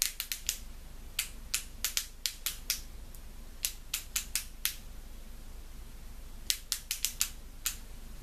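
Sharp plastic clicks of an Essence Stay Natural click-pen concealer, clicked over and over to prime it on first use so the product is pushed up into the brush tip. The clicks come in quick runs of four to seven, with short pauses between the runs.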